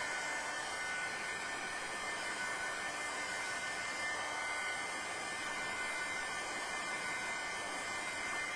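Handheld craft heat tool blowing steadily: an even rush of fan noise with a faint steady whine, drying wet colour on craft pieces.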